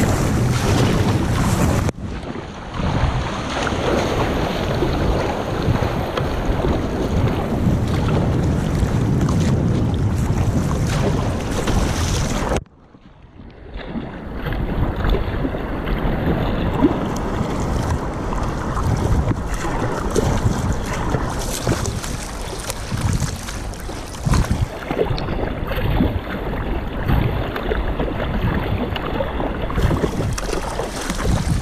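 Wind rumbling on the microphone over sea water rushing and splashing along a surfski's hull, with the paddle dipping in. The sound almost cuts out for a moment about halfway, then builds back.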